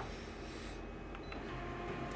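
Multifunction office copier humming quietly, with a short key-press beep about a second in as the copy job is started and the machine begins printing.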